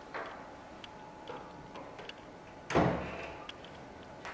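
A heavy wooden door being handled, with light clicks and steps, then one loud thud about three-quarters of the way through as the door is pushed shut.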